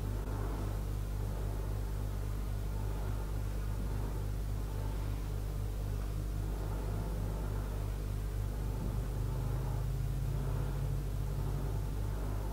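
A steady low hum, with a slightly higher hum tone growing stronger about nine seconds in.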